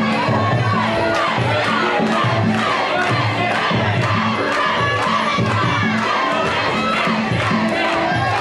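Fight crowd shouting and cheering over Muay Thai ring music, whose drum beat repeats about twice a second.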